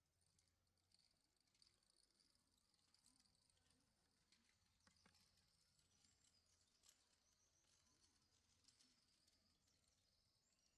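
Near silence, with faint high-pitched bird chirping throughout.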